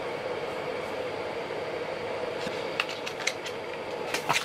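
Steady background hum and hiss with no speech, and a few faint clicks about three seconds in.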